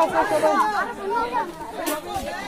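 People talking in a village, several voices in conversation.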